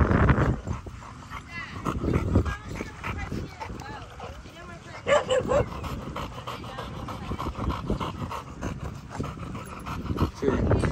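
Dogs yipping and whining, with occasional barks, in short, pitch-bending calls; one louder call comes about five seconds in.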